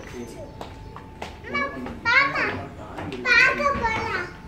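Young children's high-pitched voices calling out and chattering in several short bursts, starting about a second and a half in.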